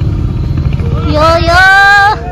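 A motorbike engine running at low revs. About a second in, a person's loud, drawn-out call that rises slightly in pitch comes in over it.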